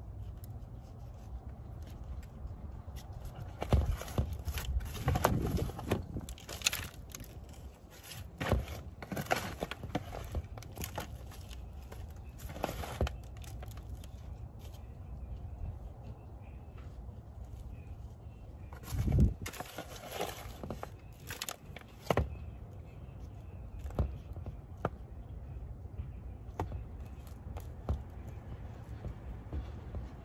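Handling noises of thin plastic cups and potting soil as tomato seedlings are repotted: irregular crinkles, taps and scrapes, a few of them louder, over a low steady rumble.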